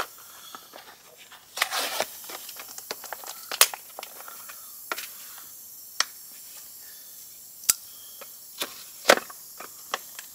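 Air hissing steadily out of a punctured car tire through the hole left by a pulled-out screw, with scattered sharp clicks and knocks of a tire plug kit tool being handled at the tire, the loudest near the end.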